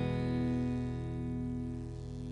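Acoustic guitar chord ringing out and slowly fading after a single strum, several notes held together with no new strokes.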